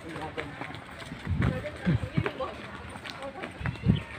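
Footsteps on a concrete road, a few low thumps at walking pace, with faint talking underneath.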